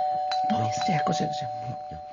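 Two-tone ding-dong doorbell chime: a higher note and then a lower one, both ringing on and fading slowly.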